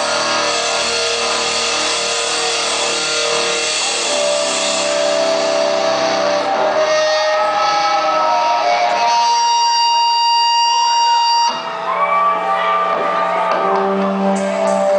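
Live rock band playing, electric guitars ringing out sustained, held notes. A high held tone stops abruptly about eleven and a half seconds in, and new lower tones take over.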